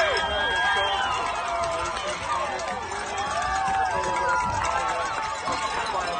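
Spectators in the stands shouting and cheering after a goal, many voices overlapping; loudest at the very start, then holding fairly steady.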